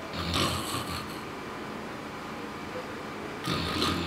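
A sleeping man snoring: two rasping snores about three seconds apart.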